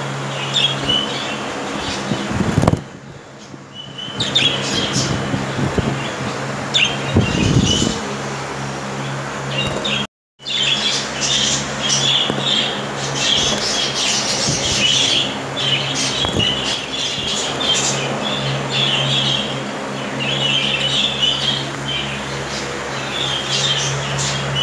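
Budgerigars chirping and chattering, short high chirps that come thick and fast in the second half, over a steady low hum. The sound cuts out completely for a moment about ten seconds in.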